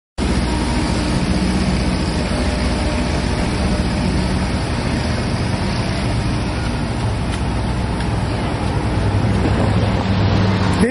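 Steady street traffic noise with a low, constant engine hum.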